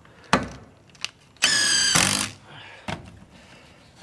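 A cordless impact driver runs for just under a second with a steady high whine, driving a screw into a 2x4 wooden block. A sharp knock comes shortly before it and a short click after.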